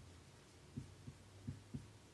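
Marker writing on a whiteboard: about four faint, low taps in the second second as the strokes land on the board, over a steady low hum.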